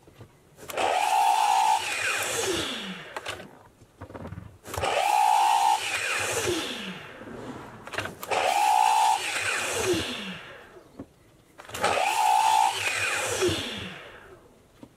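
Festool Kapex KS 120 EB sliding miter saw making four cuts through a board. Each time the motor starts suddenly, runs at a steady whine for about a second while the blade cuts, then winds down with a falling pitch.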